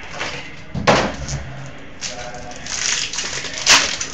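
Hands handling a foil hockey card pack: a knock about a second in, then rustling and a sharp crackle of the wrapper near the end as the pack is opened.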